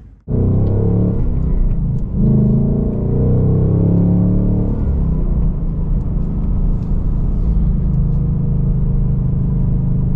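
Ford Mustang Dark Horse's 5.0-litre Coyote V8, heard from inside the cabin while driving. It pulls up in pitch over the first few seconds, then settles to a steady cruise.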